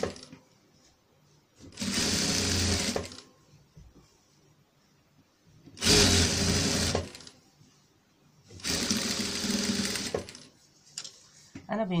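Electric sewing machine stitching in short runs: three separate runs of a second or so each, with quiet pauses between, as a rhinestone trim is sewn onto fabric.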